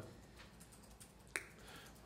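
Quiet room tone broken by a single sharp click about a second and a half in.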